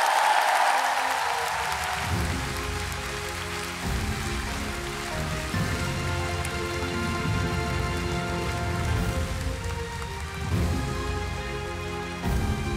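Applause that fades away over the first two seconds, then music entering about two seconds in: held chords over a deep bass.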